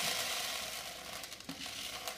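Dried popcorn kernels trickling from a jar into a plastic Vitamix blender container, the rattling pour dying away to the last few kernels. A sharp click comes about one and a half seconds in.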